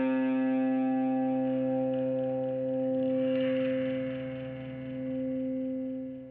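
Electric guitar letting one chord ring out through effects, held steady and slowly fading.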